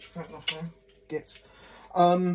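Brief muttered words and a light click as a pet water fountain is switched off.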